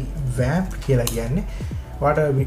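A man's voice talking, over soft background music.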